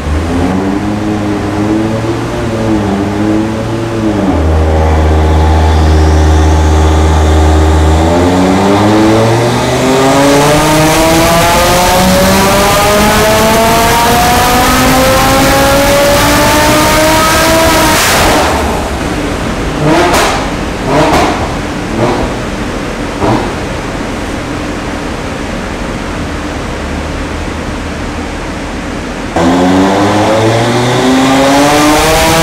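Audi RS3 2.5 TFSI inline five-cylinder with an IROZ IMS850 big turbo, running on a hub dyno during a tuning power run. It holds a steady engine speed for a few seconds, then revs in one long rising pull for about ten seconds. The pull cuts off abruptly with several sharp pops as the throttle closes, then the engine runs quieter until it suddenly revs high again near the end.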